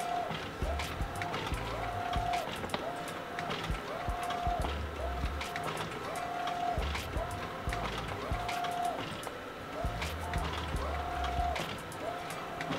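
Epson SureColor SC-F570 sublimation inkjet printer printing: the print-head carriage sweeps back and forth with a short motor whine that rises and holds, about once every 0.7 s, with light clicks as the paper advances.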